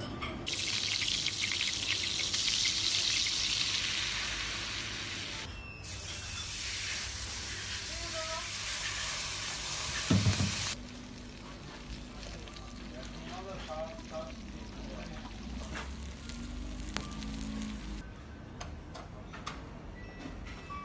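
Butter sizzling as it melts and foams in a hot stainless steel frying pan, loud for the first ten seconds or so, then dying down to a much quieter frying after a brief thump.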